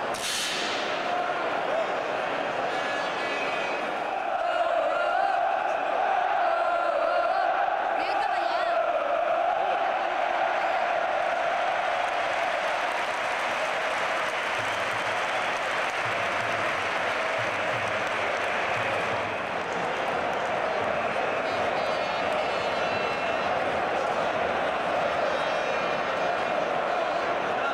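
Large football stadium crowd singing and chanting together, a steady wash of many voices with a wavering sung tune running through it.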